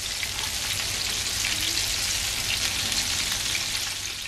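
Chicken wings deep-frying in hot oil in a cast iron skillet: a steady crackling sizzle of the oil bubbling around the breaded pieces.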